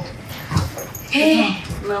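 A person's voice repeating a short syllable in brief vocal bursts, with a breathy hiss just past a second in.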